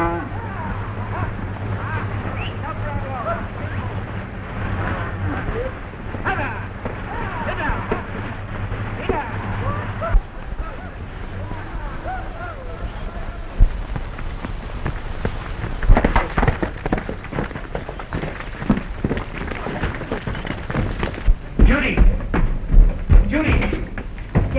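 Stampeding cattle: many bellowing calls over a low, steady rumble of the running herd. In the last third a dense run of sharp thuds and knocks takes over.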